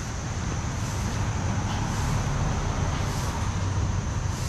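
A vehicle engine running steadily with road and wind noise, a continuous low rumble.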